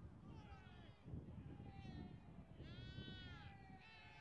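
Faint, distant shouts and calls from players on a training pitch, with one high, drawn-out shout about three seconds in, over low wind rumble.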